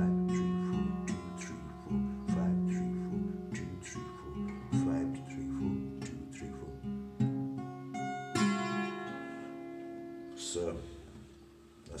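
Twelve-string acoustic guitar, capoed at the sixth fret, playing a picked pattern of ringing notes and chords. A strummed chord about eight seconds in rings and fades away near the end.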